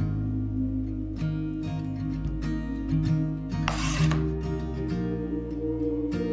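Gentle background music with plucked acoustic guitar. About two-thirds of the way in, a brief scraping noise of under half a second sounds over it.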